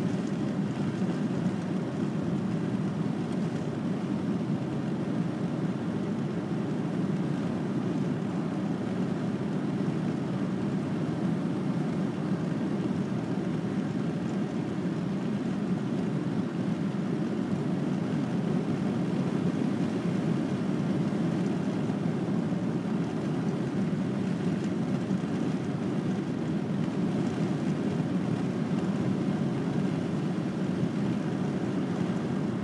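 Steady engine and road noise inside the cabin of a VW Transporter T5 van cruising at an even speed, a low, unchanging rumble.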